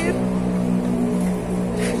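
A car engine idling: a steady, even hum.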